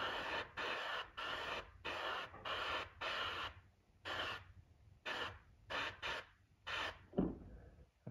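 Airbrush spraying paint in a string of short hissing bursts as the trigger is pressed and let go, about two a second, the bursts growing shorter and farther apart in the second half.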